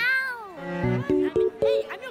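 A young girl's high-pitched squeal, drawn out and rising then falling, with a few shorter squeals near the end, over background music of evenly plucked notes.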